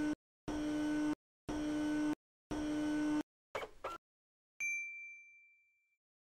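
Electronic logo sting: a run of buzzy beeps about a second apart, a short glitchy warble, then a single bright ding that rings out and fades.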